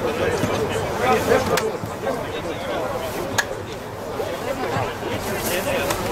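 Indistinct talk of several voices from spectators and players at the pitch side, with a sharp knock about three and a half seconds in.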